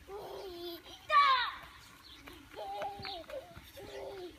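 Young children's voices calling out while playing, with one loud, high squeal that falls in pitch about a second in.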